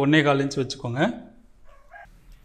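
A man speaking for about the first second, then a short pause with only faint room sound.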